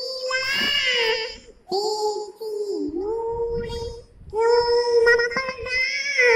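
A young girl singing a Bengali Islamic devotional song (gojol/naat) unaccompanied, in a high voice with long held notes, one sliding dip in pitch near the middle, and short breaths between phrases.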